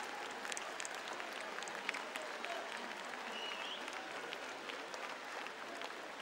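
Large audience applauding amid crowd noise, the handclaps gradually thinning out.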